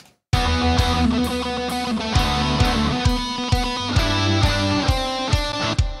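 Distorted electric lead guitar played through the Grind Machine II amp-sim plugin, with only a delay after it, over a band mix with drums hitting about two to three times a second. It starts about a third of a second in and plays on throughout.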